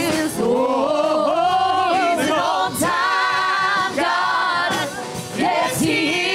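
Gospel vocal group of men and women singing in harmony into microphones, in phrases separated by brief pauses.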